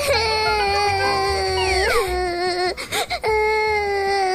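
Exaggerated cartoon crying: a long, high, held wail, then a short break and a second long wail.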